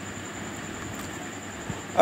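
Steady background hiss of room and recording noise, with no speech.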